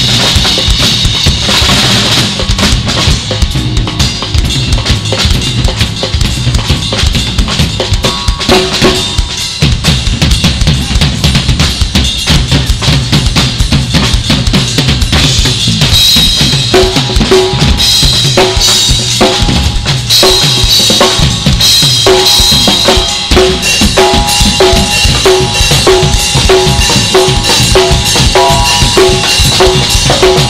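Live drum kit played hard in an improvised solo: fast kick drum, snare and tom strikes under crashing cymbals. About halfway through it settles into a steady repeating pattern.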